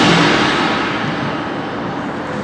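A marching band's playing stops and its echo dies away in the large stadium, leaving a steady wash of crowd noise that fades slightly.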